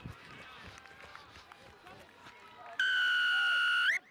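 Rugby referee's whistle: one long, loud, steady blast of about a second starting near the end, rising in pitch as it stops, blown as the try is scored. Before it, scattered shouts from players and a thin crowd.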